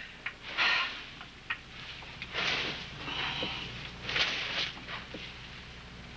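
A string mop swished across the floor in several short strokes, with a few light knocks, over the low hum of an old soundtrack.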